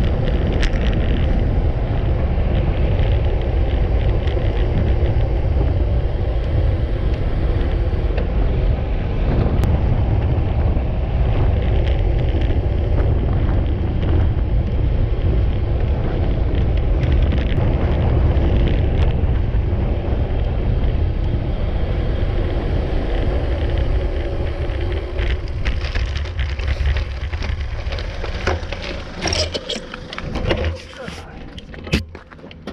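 Wind buffeting the microphone of a handlebar-mounted camera on a road bike riding at speed: a steady, loud, low rumble that eases over the last few seconds as the bike slows.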